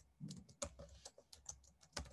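Typing on a computer keyboard: a quick, irregular run of quiet key clicks.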